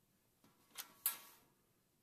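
A few sharp plastic clicks, the loudest about a second in with a short fading tail, as a test lead's banana plug is pulled out of a bench DC power supply's output terminal, removing the short across the output.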